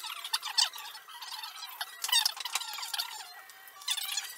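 A small metal clock part rubbed back and forth on abrasive paper laid on a flat black granite plate, in repeated squeaky scraping strokes. The strokes are loudest about half a second in and around two seconds in.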